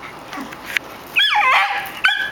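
A small terrier's high-pitched yips and whines, a short run starting a little past halfway, made in play.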